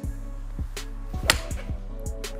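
Background music with a steady bass line, and just past halfway one sharp crack of a 7-iron striking a golf ball off a range hitting mat.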